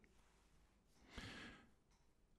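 Near silence, broken about a second in by one faint, short breath from the narrator, drawn in before the next sentence.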